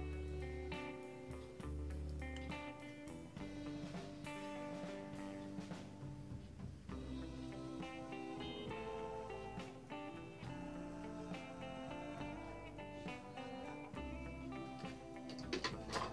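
Quiet background music with guitar, its notes changing over a steady bass line.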